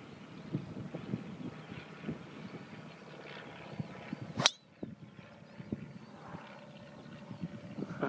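A driver swung at full speed: a brief swish ending in one sharp, loud crack as the clubhead strikes the golf ball off the tee, about halfway through.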